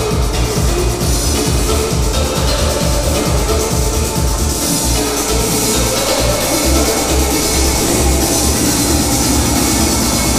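Loud recorded music with a heavy, steady beat, playing for a dance routine.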